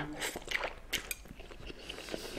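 Person eating instant noodles: faint slurping and chewing, with a few soft, wet mouth clicks scattered through.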